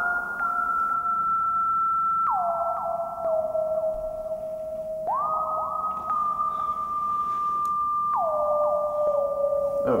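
A single pure electronic tone on the soundtrack swaps slowly between a high and a low pitch. It glides down, holds about three seconds, glides back up, holds about three seconds, then glides down again near the end, with an echo trailing each glide.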